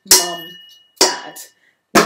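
A wooden spoon striking an upturned metal pan used as a kitchen drum, twice, about a second apart, the first hit ringing on briefly; a voice speaks 'mum, dad' in time with the hits.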